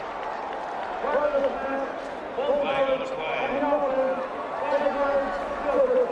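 A man's voice speaking, not picked up as commentary, over a steady background of stadium crowd noise.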